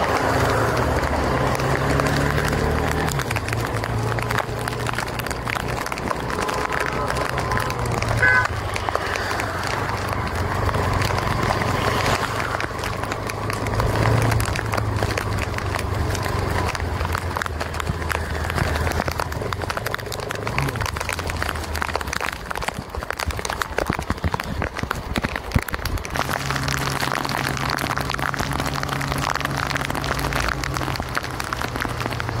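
Motorcycle ridden through heavy rain: a steady rush of wind and rain over the low hum of the engine.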